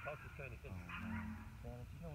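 Indistinct voices of people talking and murmuring, with a steady high-pitched hum behind them.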